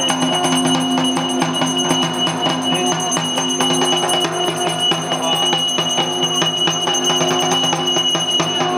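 Dhak, the large Bengali barrel drum, beaten in a fast, continuous rhythm, with bell-like metal ringing held steadily underneath.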